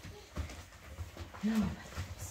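Cocker spaniel puppies making a short, low whine about one and a half seconds in, among soft bumps as they clamber over a person.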